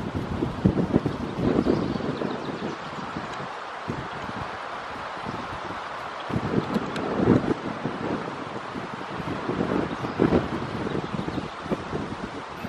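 Strong wind howling and buffeting the microphone, coming in uneven gusts that swell and drop several times.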